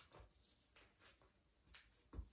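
Near silence with a few faint, brief clicks and rustles as a plastic obi pillow (kairyō makura) and a silk obi are handled.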